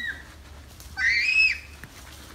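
A child's short high-pitched squeal about a second in, rising, holding briefly and falling, after the tail end of a laugh.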